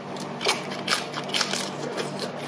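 Crisp crunching of fresh lettuce leaves being chewed close to the microphone: several sharp crunches, the loudest about half a second apart.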